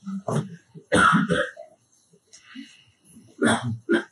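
A man clearing his throat and coughing in short bursts close to the microphone, loudest about a second in, with another near the end.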